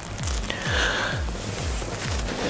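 Background music with a steady, fast beat of low bass strokes, about four a second.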